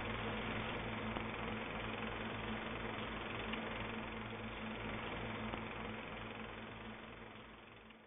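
Steady low hum with hiss under it, fading out over the last two seconds.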